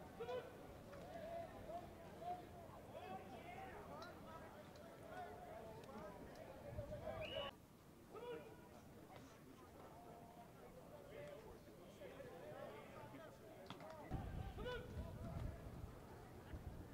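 Faint distant shouting voices of players and coaches across a football practice field. The sound drops abruptly about halfway through, and a low rumble comes in near the end.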